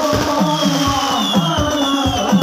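Hadrah ensemble of rebana frame drums and percussion playing a steady, even rhythm, with a melody line above it.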